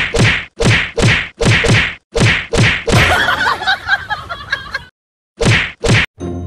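A rapid run of loud whack-like slap sounds, about three a second, in time with a cat swatting another cat with its paw. The hits give way to about two seconds of jumbled scuffling noise, then two more hits near the end.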